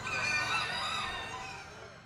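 Many chickens crowing and clucking at once, as in a poultry show barn full of caged birds, fading out near the end.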